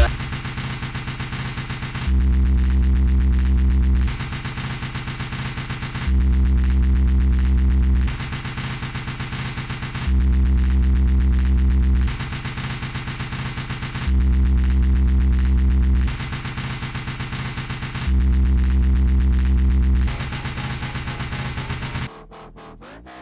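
Electronic dubstep track made in Audiotool: a deep sub-bass note sounding for two seconds in every four, alternating with a buzzing, engine-like synth loop over a fast steady pulse. It cuts off suddenly at the end.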